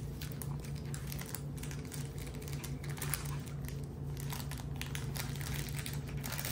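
Puppies chewing and pawing at a soft fabric activity cube toy, its crinkly material rustling and crackling irregularly, over a steady low hum.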